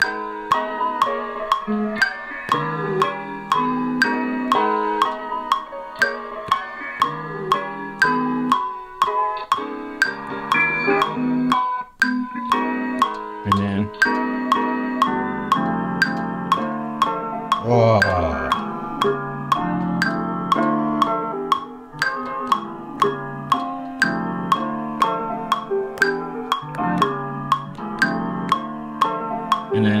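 Chopped sample slices played from an Ableton Push 3, warped to a 120 BPM tempo, with a steady click about twice a second. Near the middle a low note glides downward.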